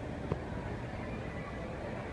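Steady low rumble of a moving escalator, with a light knock about a third of a second in.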